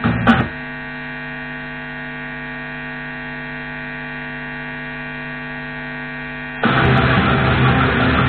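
Steady electrical mains hum from an amplified music rig, a dense stack of even tones, after a last loud hit of music ends about half a second in. About six and a half seconds in, loud electric guitar cuts in suddenly.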